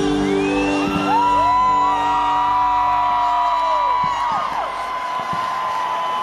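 Crowd whooping and yelling in long held "woo" cries, several voices overlapping, each rising, holding and then dropping away, as the music under them ends in the first half-second.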